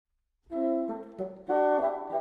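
A bassoon playing a quick phrase of separate notes, starting about half a second in.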